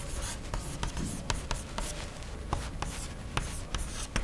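Chalk writing on a blackboard: an irregular run of sharp taps and short scratches as the strokes are drawn.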